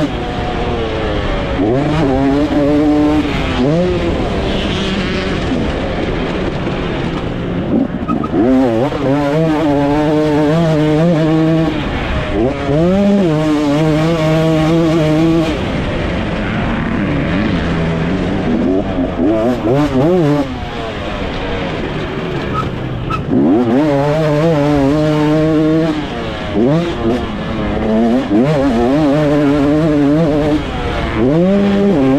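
2024 KTM SX 250 two-stroke motocross engine ridden hard, revving up and dropping back over and over as the throttle opens and shuts around the track.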